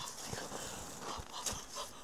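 Faint, quick heavy breathing of a person just out of icy water, with a few soft low thumps.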